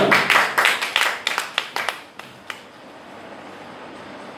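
Congregation clapping their hands in a quick rhythm, about five claps a second, which dies away after about two seconds and leaves only a faint hiss of room noise.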